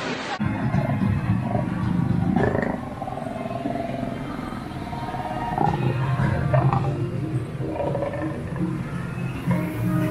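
Music with a big cat roaring and growling over it, starting abruptly just after the start.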